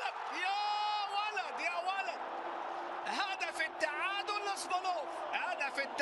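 A man's voice, the match commentary, over a steady stadium crowd noise.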